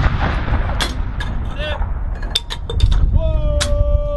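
Army ceremonial salute guns firing blank rounds, heard as a deep rolling rumble with a few sharp cracks. A voice calls out a long held command near the end.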